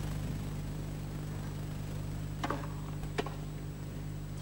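Two short knocks of a tennis ball on racket or court, about three-quarters of a second apart, over a steady low hum in the old broadcast audio.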